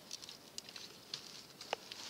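Faint, irregular light crackles and ticks of dry grass and twigs being disturbed.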